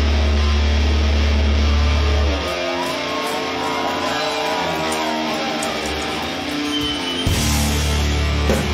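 Live heavy rock band with distorted electric guitars, bass and drums holding a heavy sustained chord. About two and a half seconds in, the bass and drums drop out, leaving the guitars alone with bending notes. Just before the end the full band crashes back in.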